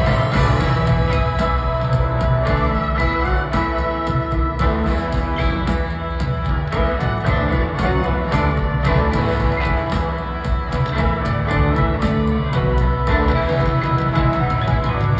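A rock band and a symphony orchestra playing together live, with electric guitar, piano, upright bass and drums over the orchestra, recorded from the audience.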